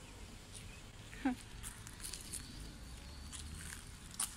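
Outdoor background with a steady low rumble, faint scattered ticks and faint high chirps, and a single short falling voice-like call about a second in.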